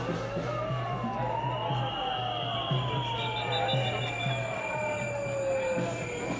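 A siren wailing in slow sweeps, rising for about two seconds and then falling slowly for about four, over the noise of a marching crowd with a low thumping beat.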